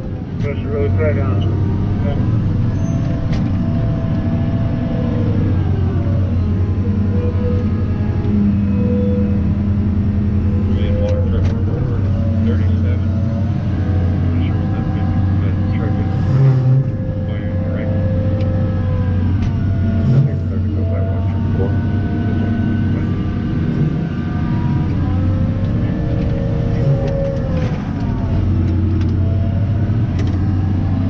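Caterpillar 994 wheel loader's V16 diesel engine heard from inside the cab, running steadily with its pitch rising and falling as the loader works. Two brief knocks come a few seconds apart in the middle.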